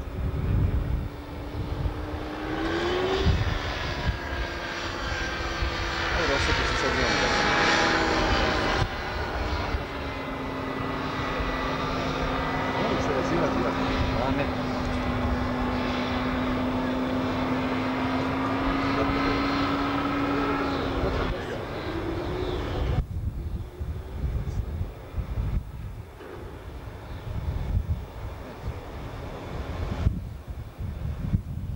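Engine and propeller of a motorized hang glider droning overhead in flight. The pitch rises slightly at first and then stays nearly steady. It is loudest in the first third and fades away about two-thirds of the way in, with wind buffeting the microphone throughout.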